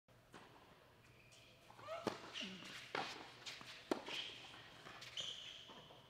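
Tennis rally: three sharp racquet strikes on the ball, a little under a second apart, with short high shoe squeaks on the court between them.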